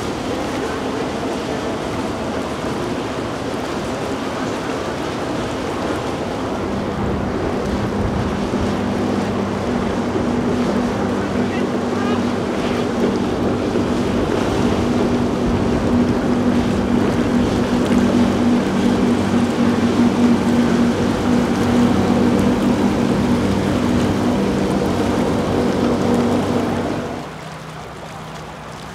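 Motor yachts running past under power: a steady engine drone over the rush of wake and water. The drone swells through the middle and drops away suddenly near the end.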